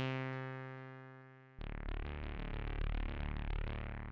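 Elektron Digitakt playing synth tones. A single note is struck right at the start and dies away, because with the Launchpad bypassed only the active track sounds. About a second and a half in, a fuller chord of several voices sounds together and rings out.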